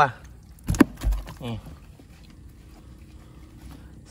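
Wet fish being shifted by hand in a plastic tub: one sharp slap-like knock a little under a second in, then a brief dull thump, and little else.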